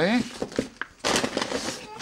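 Brown paper bags rustling and crinkling against a cardboard box as they are lifted out, an irregular papery rustle with a few sharp clicks.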